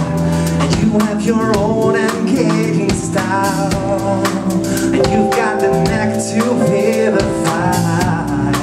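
Small live rock-pop band playing a song: strummed acoustic guitar, electric bass and a drum kit keeping a steady beat, with a male voice singing over it.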